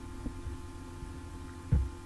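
A low, steady electrical hum from the recording setup in a pause between speech, with one soft low thump near the end.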